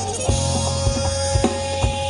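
Live jazz band playing, with a drum kit keeping time under a held pitched note and a low bass.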